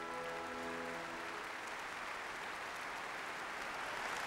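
A symphony orchestra's final held chord dies away within the first second and a half, overtaken by audience applause that goes on steadily in a large hall.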